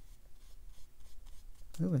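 Faint, irregular scratching and rubbing of a watercolour brush stroking paint onto cold-press cotton watercolour paper.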